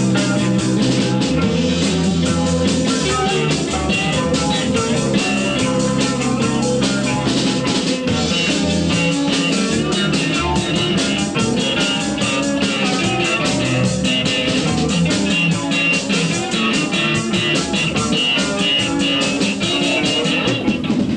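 Live rock band playing: electric guitars, bass guitar and drum kit, with fast, steady drumming throughout.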